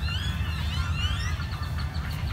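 Birds chirping: a quick run of short rising and falling whistles, over a steady low rumble.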